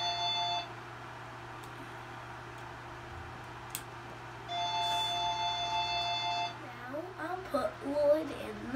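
A steady electronic chime of several pitches held together sounds twice: it ends about half a second in and comes again for about two seconds from about four and a half seconds in. A low steady hum runs underneath.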